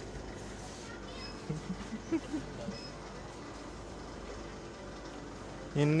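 Steady background hum of a minimarket, with a few faint short voices between one and three seconds in. A loud laugh comes near the end.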